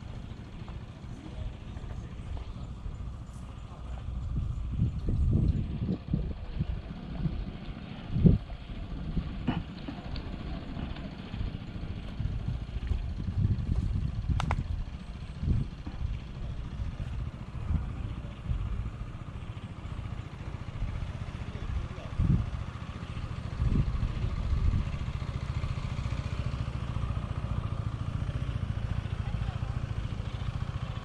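A motorcycle engine running at low speed, over an uneven low rumble with irregular thumps; the loudest thump comes about eight seconds in.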